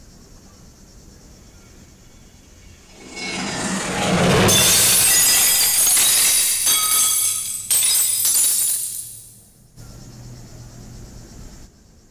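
A loud, shimmering crash-like sound cue full of bright ringing high tones. It swells in over about a second, holds for several seconds and then dies away, leaving faint crickets.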